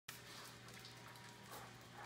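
Near silence: quiet room tone with a few faint soft ticks.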